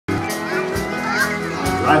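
Live band playing the opening of a country song, with voices chattering among the listeners; the lead singer comes in right at the end.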